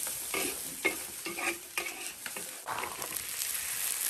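Metal spatula scraping and tossing shredded vegetables and green soybeans around a wok, over a steady sizzle of frying; the scrapes come irregularly, about every half second.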